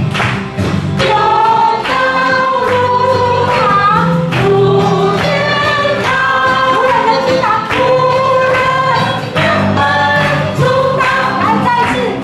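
A church worship band performing a praise song: several voices singing together over continuous band accompaniment.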